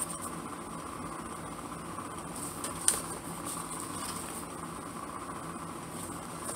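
Handmade paper envelopes being handled, with faint rustles and one sharp click about three seconds in, over a steady background hiss.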